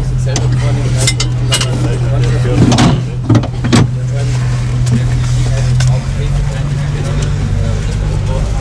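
Lamborghini Gallardo Super Trofeo's V10 engine running steadily, heard from inside the race car's cabin as a loud low drone whose pitch dips slightly about six seconds in. A few sharp clicks near one and three seconds in.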